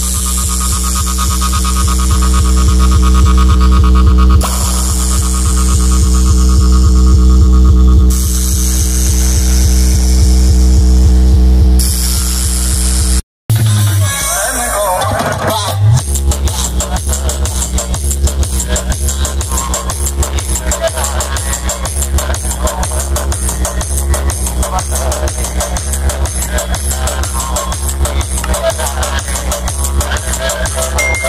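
Loud electronic dance music with heavy bass, played through a large DJ sound-system speaker stack. A build-up rises for the first dozen or so seconds, cuts out briefly, then gives way to a fast, steady beat.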